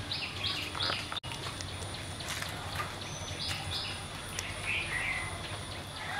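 Birds chirping in short repeated calls over a steady low background noise, with the sound cutting out for an instant about a second in.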